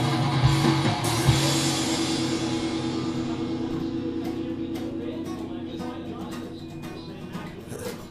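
Acoustic guitar strummed a few more times, then a last chord left ringing and slowly dying away.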